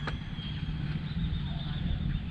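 Steady low outdoor rumble, with a faint thin high tone above it.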